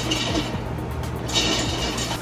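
Background music over the faint clicking of a hand-cranked stovetop popcorn popper on a gas burner, as the first kernels begin to pop.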